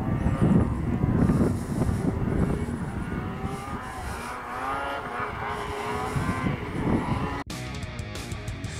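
Snowmobile engine running with a whine that rises and falls as the sled rides along the trail. It cuts off abruptly near the end.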